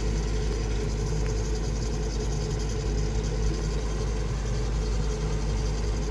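Heavy diesel engine of an XCMG rotary piling rig running steadily while its winch lifts a steel reinforcement cage, a constant low hum with rumble beneath.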